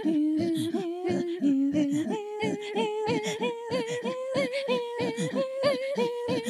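Inuit throat singing (katajjaq) by two women face to face: a fast rhythmic pulsing of throat and breath sounds over a held sung note, which steps up in pitch about two seconds in and rises slowly after. The piece imitates the wind.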